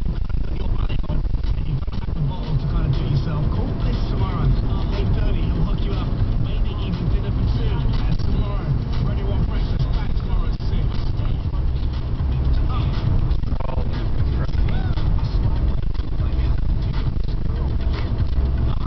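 Steady low road and engine rumble of a car driving in traffic, heard from inside the cabin.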